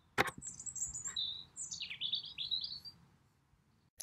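A sharp click, then a songbird singing in the open air: a run of high chirps followed by a string of quick falling and rising whistled notes that stop about three seconds in.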